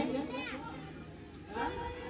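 Faint voices from the seated audience, children's among them, after a question to the crowd. About a second and a half in, a steady held musical note starts and keeps sounding.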